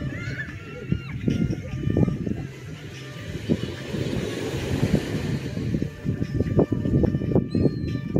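Beach ambience: an uneven low rumble of surf and wind on the microphone, with faint distant voices and a couple of short high chirps, one just after the start and one near the end.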